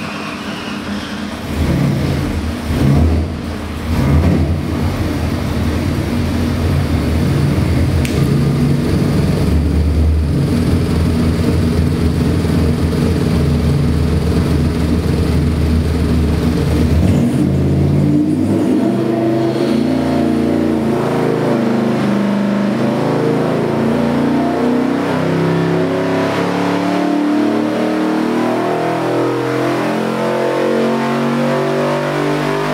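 Ford 347 stroker small-block V8 running on an engine dyno: it idles, with two short louder surges a few seconds in, then a little past halfway it pulls a full-load sweep, its pitch rising steadily as it climbs past 5000 rpm.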